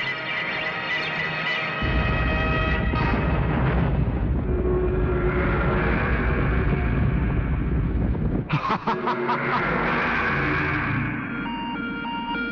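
Action-film soundtrack: tense music, then a loud low rumble from about two seconds in that breaks up in a quick stutter of pulses near the nine-second mark. A run of short electronic beeps follows near the end.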